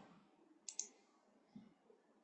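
Near silence broken by one short click a little under a second in.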